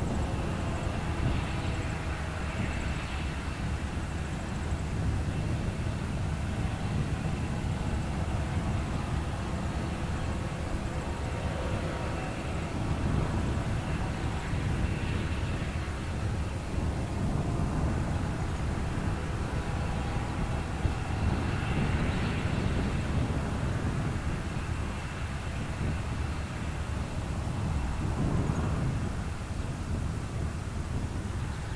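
Diesel-electric freight locomotives running at low power as a grain train creeps along slowly: a steady low engine drone with faint higher swells.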